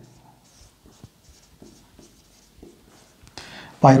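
Marker pen on a whiteboard, writing a word in short, faint strokes.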